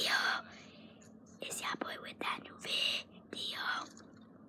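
A boy whispering in several short phrases right up against the microphone.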